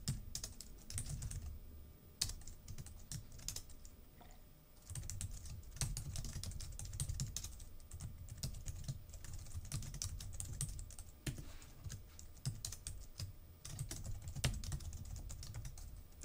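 Typing on a computer keyboard: runs of quick keystroke clicks broken by short pauses, with a quieter stretch between about two and five seconds in.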